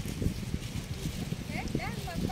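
Indistinct background voices over the low rumble and knocking of an outdoor microphone as the camera is carried along. A few short rising calls come in about one and a half seconds in.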